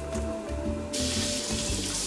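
Food sizzling in a frying pan, the hiss starting suddenly about a second in, over background music.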